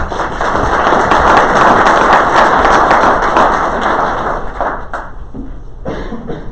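Audience applause, a dense patter of many hands clapping that swells in the first second and dies away after about five seconds.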